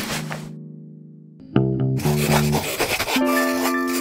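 Cartoon music: a short swish, then a held low note that fades away. About a second and a half in a sudden loud musical stinger hits, and a pencil lead scratches across paper over the sustained notes that follow.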